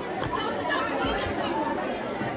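Chatter of many voices talking at once in a crowded school cafeteria at lunchtime.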